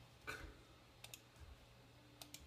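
A few faint clicks from operating a laptop as the Start menu is opened.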